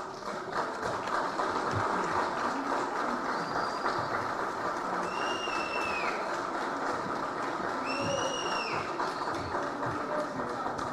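Audience applauding steadily, with two short rising-and-falling whistles cutting through about five and eight seconds in.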